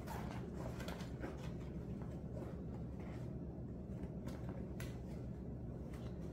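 Soft rustling and a few light clicks as a fabric garment bag with leather trim is handled and folded, over a steady low hum in the room. The handling noise is busiest in the first second or so, then thins to occasional ticks.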